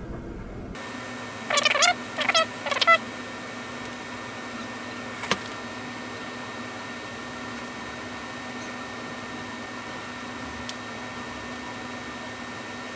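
Three short pitched animal calls in quick succession about a second and a half in, each wavering up and down, over a steady low hum. A single faint click follows a few seconds later.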